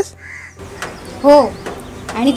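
A crow cawing: a single short call about a second in.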